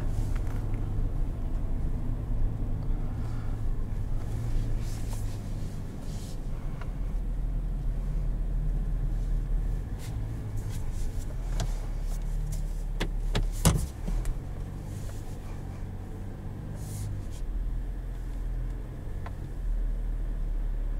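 The Silverado's 3.0-litre Duramax inline-six turbo diesel runs at low speed, heard from inside the cab as a steady low hum that shifts a little with load. A few sharp clicks and knocks come about two-thirds of the way through.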